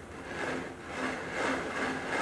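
3D-printed plastic harmonic drive running while its output arm is held and its body turns: a steady rubbing whir from the plastic gearing, swelling and fading a few times.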